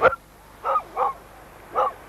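A large dog barking three short times: two barks close together about two-thirds of a second in, then one near the end. A sharp click, louder than the barks, comes right at the start.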